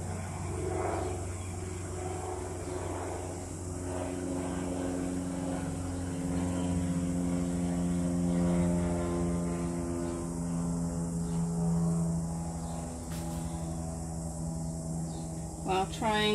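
Propeller aircraft engine drone passing over. It grows louder towards the middle and fades near the end.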